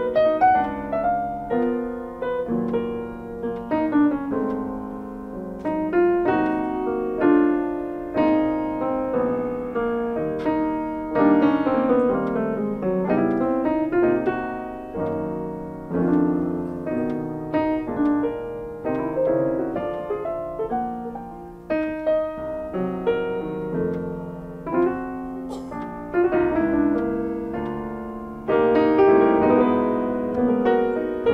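Two pianos played together as a duo in a flowing passage of many quick struck notes, mostly in the middle register, growing louder near the end.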